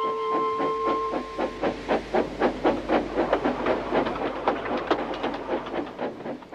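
Steam locomotive chuffing steadily at about four puffs a second over a low running rumble. A held music note fades out about a second in.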